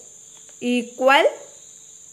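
A man's voice making two short vocal sounds about half a second in, the second rising in pitch, over a steady high-pitched whine in the background.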